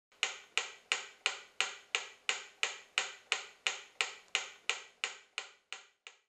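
Mechanical pyramid metronome ticking at a quick steady beat of about three ticks a second, the ticks growing fainter near the end.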